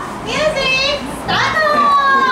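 Young children calling out in high voices: a short call about half a second in, then a longer drawn-out call that slides down near the end.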